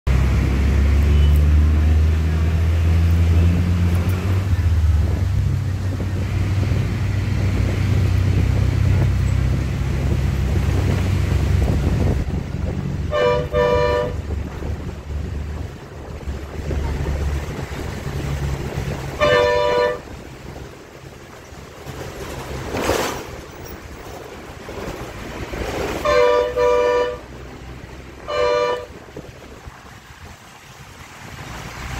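Vehicle horns honking four short times, each a two-tone blast under a second long, over a low rumble of traffic and wind. A brief rushing sound near the middle is a vehicle passing.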